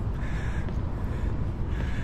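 Steady low outdoor rumble, with two faint short calls high above it, one about half a second in and one near the end.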